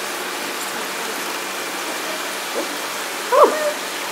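Steady rushing of running water in a platypus tank, an even noise that doesn't change.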